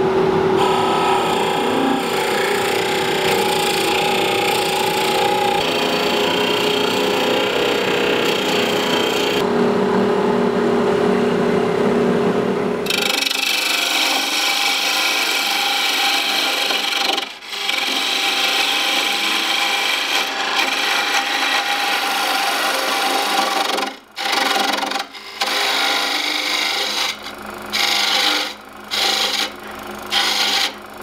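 A Forstner bit boring into the end of a blank spinning on a wood lathe, over a steady motor hum. About halfway through it changes to a turning gouge cutting a tenon on a spinning wood blank, a steady scraping hiss of shavings that stops briefly several times near the end as the tool comes off the wood.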